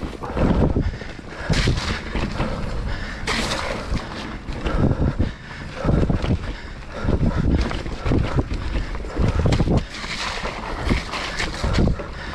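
Wind buffeting the microphone of a chest-mounted action camera in irregular low gusts while a full-suspension mountain bike rolls down a dirt forest trail, its tyres running on the ground and the bike giving a few sharp knocks and rattles over the rough surface.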